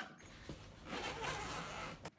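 Zipper on a soft instrument case being pulled open: a short click about half a second in, then one long zip lasting about a second.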